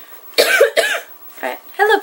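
A young woman's voice: two short voiced sounds about half a second in, then she starts talking near the end.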